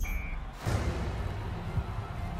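A short, single-tone electronic beep as a gate lock engages. About half a second later comes a deep cinematic boom hit, followed by a low rumbling music drone.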